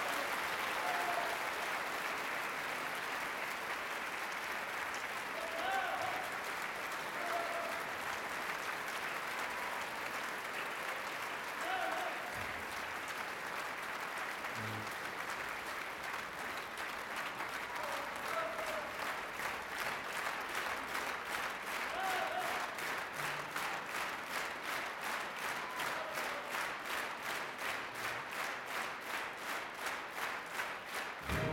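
Theatre audience applauding a ballet dance, with scattered shouts from the crowd. About halfway through, the clapping falls into a steady rhythmic beat in unison.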